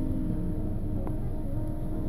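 Low, steady rumble of a car moving slowly, heard from inside the cabin, with soft music playing underneath and a single small click about a second in.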